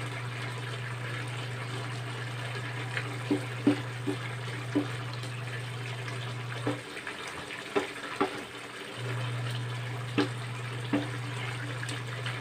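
Coconut-milk sauce with jackfruit simmering and bubbling in a wide aluminium pan as a wooden spatula stirs it, with scattered short pops. A steady low hum underneath drops out for about two seconds in the middle.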